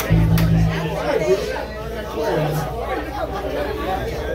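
Crowd chatter in a bar between songs, with two low held notes from an amplified instrument: one lasting under a second at the very start and a shorter one about two and a half seconds in.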